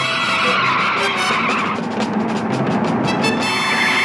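Car tyres squealing in two long skids, one in the first couple of seconds and another starting near the end, as a sports car corners hard at speed. Orchestral chase music with brass plays underneath.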